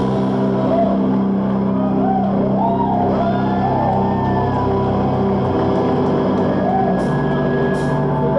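Live rock band in a drumless passage: electric guitars and bass hold sustained, ringing chords, with a voice wavering over them in the middle, and cymbal hits come back in near the end.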